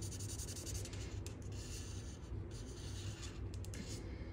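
Faint scratchy rubbing of a Stampin' Blends alcohol marker's felt tip colouring in on cardstock, in short strokes with brief pauses.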